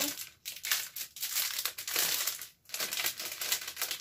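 Small clear plastic bag of gold and silver beads crinkling in irregular bursts as it is handled to get the beads out.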